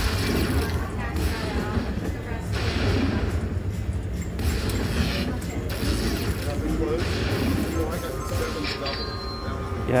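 Aristocrat Dollar Storm Ninja Moon slot machine's bonus-round sounds: clicking, ratcheting effects in repeated bursts as the bonus reels spin and the win meter climbs, over a steady low background.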